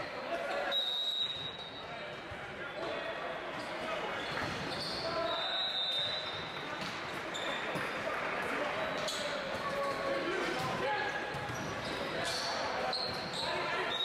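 Indoor volleyball rally in a large, echoing gym: a volleyball is struck by hands and arms in sharp smacks, among players' shouts and spectators' chatter.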